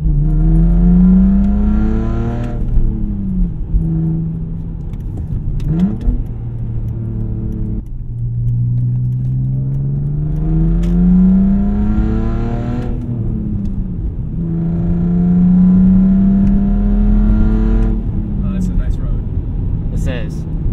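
BMW E46 330xi's 3.0-litre straight-six with eBay headers and a muffler delete, heard loud inside the cabin while driving: the exhaust note climbs in pitch as it pulls, falls away at each gear change or lift, and holds steady between, several times over.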